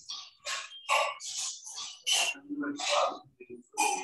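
A person talking in quick, breathy bursts, the words indistinct.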